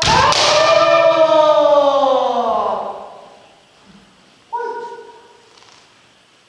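A kendoka's kiai: one long shout held for about three seconds, falling in pitch, with the sharp crack of a bamboo shinai hitting armour just after it begins. A second, shorter and quieter shout comes about four and a half seconds in.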